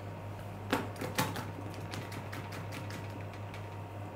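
Two light knocks about a second in, then faint scattered small clicks and ticks, over a steady low hum.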